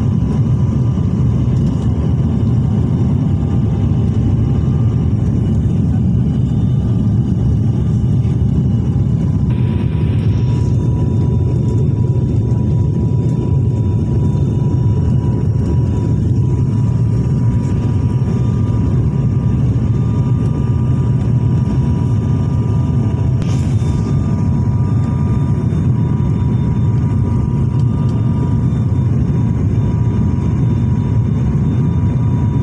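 Cabin noise of an ATR 72 turboprop airliner on approach: a loud, steady deep rumble of the engines and propellers, with a faint steady whine above it.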